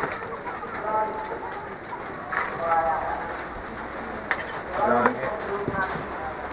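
People talking nearby in bursts over a steady background hum of activity, with one sharp click a little past the middle.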